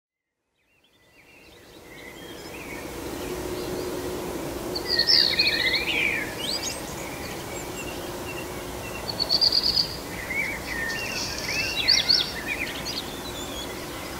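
Outdoor ambience fading in after about a second of silence: a steady background hiss with birds chirping and whistling in several short bursts.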